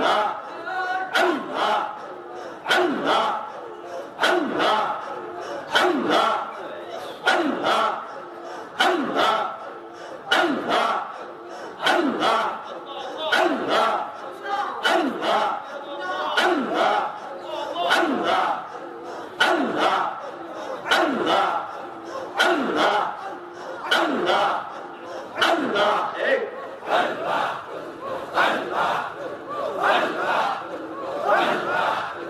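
Loud rhythmic zikr chanting by a group of men, led into a microphone. A forceful chanted call comes about once a second, each sliding down in pitch.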